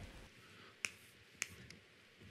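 Faint, sharp taps of chalk striking a blackboard as writing begins: two clear taps about half a second apart, then a softer one just after.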